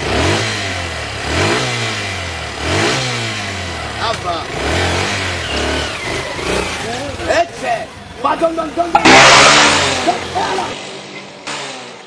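Small motorbike engine revved hard several times, its pitch rising and falling in quick sweeps as the bike lurches off. Men shout, and a loud burst of noise comes about nine seconds in.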